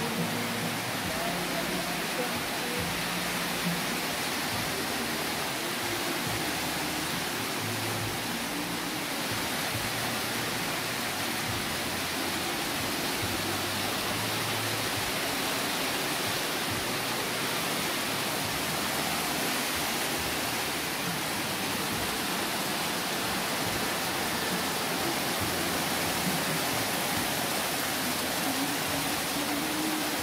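Heavy tropical downpour, a dense steady rush of rain heard from under a roofed shelter.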